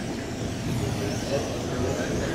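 Electric 1/12-scale RC pan cars with 13.5-turn brushless motors running laps on an indoor carpet track: a faint high motor whine over a steady hall hum of background voices.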